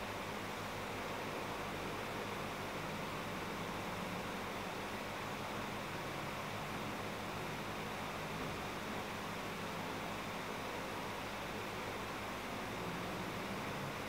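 Steady background hiss with a faint low hum: the room tone of a large empty church.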